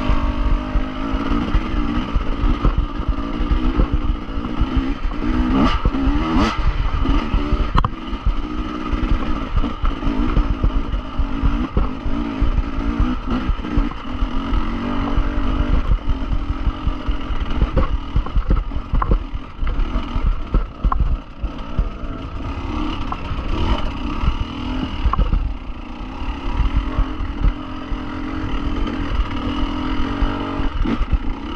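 Dirt bike engine running at low trail speed, revs rising and falling as the rider picks through rocks. Scattered knocks and clatter from the bike jolting over the rough ground.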